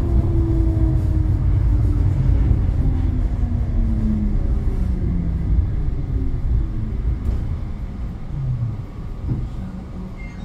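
Bozankaya low-floor tram braking: the whine of the traction drive falls steadily in pitch over the rumble of wheels on the rails. The rumble fades toward the end as the tram slows for a stop.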